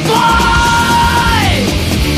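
Thrash metal song with distorted guitars, bass and drums, over which one high yelled vocal note is held for over a second and then slides down in pitch before cutting off.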